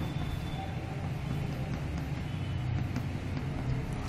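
Steady low hum of background room noise, without speech.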